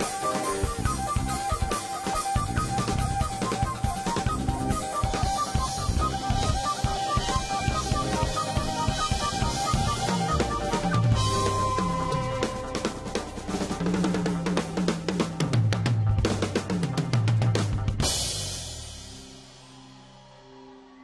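Drum kit played fast and hard with kick, snare and rolls, joined by dhol drums, over a held pitched tone in the first half. In the second half, tom fills step down in pitch and end on a last hit about 18 seconds in, which rings out and fades.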